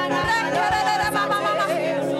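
Music with a solo singing voice, its melody wavering over a steady sustained accompaniment.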